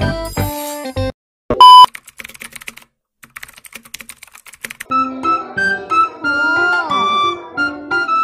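Background music that stops about a second in, followed by a short, loud beep and then about three seconds of soft, rapid typing-like clicks from a typewriter-text sound effect; music with sliding notes starts again about five seconds in.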